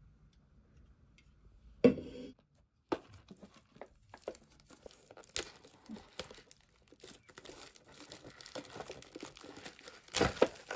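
A single sharp knock about two seconds in, then irregular crinkling and tearing as the clear plastic shrink-wrap is peeled off an instant-noodle cup, growing busier toward the end.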